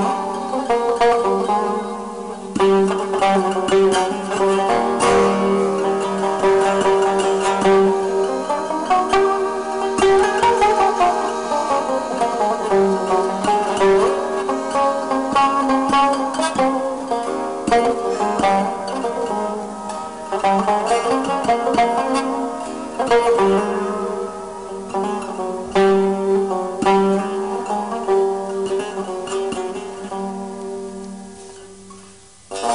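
Turkish classical instrumental music: a peşrev in makam segâh, with a plucked tanbur melody over long held tones from the kemençe and ney.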